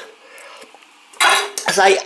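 A spoon clinking faintly against a soup bowl. A man's voice starts about a second in.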